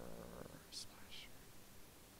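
A man's voice trailing off, then two short, soft whispered hisses about a second in.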